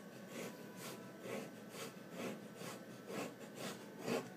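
Steel nib of a Jinhao X750 fountain pen scratching across paper in quick repeated up-and-down loop strokes, about two a second.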